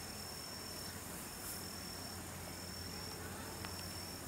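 A steady, high-pitched insect trill with a brief break a little past halfway, over a faint low hum.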